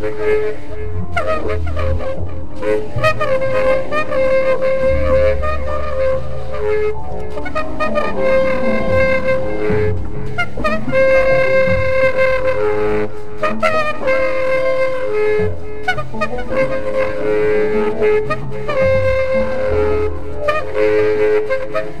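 Free-improvised jazz: a tenor saxophone plays long held notes, moving back and forth between two close pitches, over low upright bass notes.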